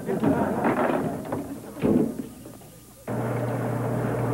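Kitchen trash compactor crushing an old radio: irregular crunching and thuds with a louder crunch about two seconds in, dying away soon after. A steady low hum starts abruptly about three seconds in.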